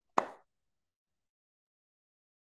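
One brief short sound just after the start, then dead silence.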